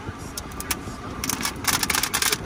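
Protective plastic film being peeled off a new touchscreen, crackling in a run of sharp crinkles that grows denser in the second half.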